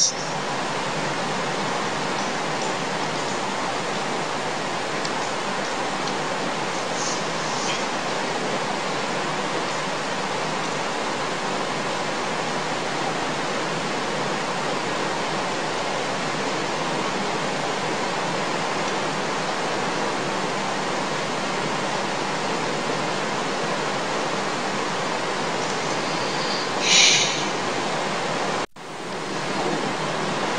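Steady hiss of the recording's background noise, with no other sound in it. A brief faint high blip comes about 27 s in, and the hiss cuts out for a moment shortly before the end.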